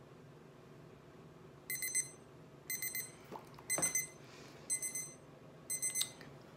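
Candy Lipz lip plumper's digital countdown timer beeping at zero, the end of the timed plumping session: groups of about four quick high electronic pips, about once a second, five groups in all beginning a little under two seconds in.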